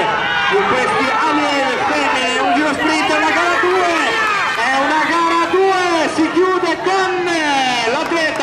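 Only speech: a man's raised voice commentating without a break through the sprint finish.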